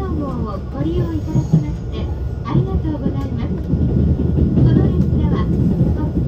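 Running noise inside a JR Central 383-series limited express car, a steady low rumble, with people talking in the carriage over it.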